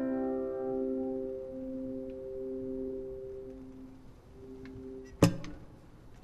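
Final chord of an acoustic guitar ringing out and slowly fading, its low notes wavering gently. A single sharp knock comes near the end, as the guitar is handled.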